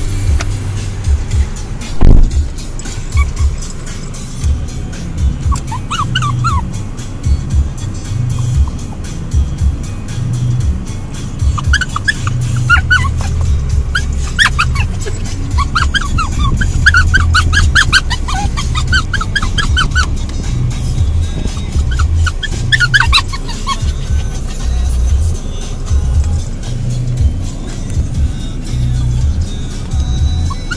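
Music playing on the car stereo with a pulsing bass beat, and a loud thump about two seconds in. A small Maltese puppy whines in short, high rising squeaks at times over the music.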